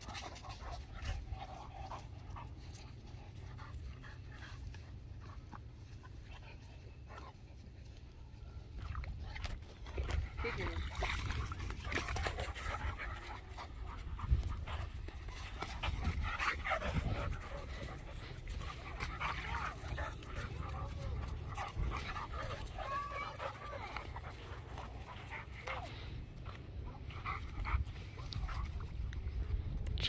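A Cane Corso and a pit bull playing rough together, with panting and short vocal sounds that come and go. They grow louder and busier from about ten seconds in.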